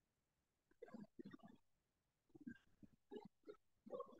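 Near silence over a video-call line, broken by a few faint, muffled murmurs in short bursts, like a distant voice.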